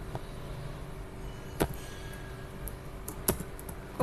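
Computer keyboard being typed on: a few scattered sharp keystroke clicks over a steady low background hum.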